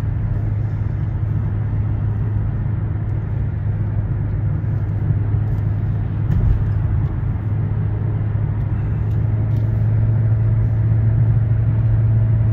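Steady low drone of a car driving, engine and road noise heard from inside the cabin, growing slightly louder over the last few seconds.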